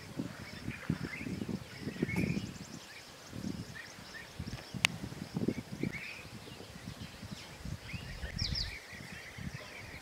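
Birds chirping and calling in short phrases over irregular low wind buffeting on the microphone, with one sharp click about five seconds in.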